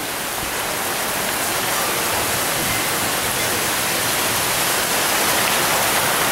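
Heavy rain pouring down steadily, with water streaming off the roof edge.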